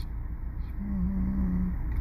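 A man's drawn-out, closed-mouth "hmm" held on one pitch for about a second in the middle, a thinking pause, over a steady low background hum.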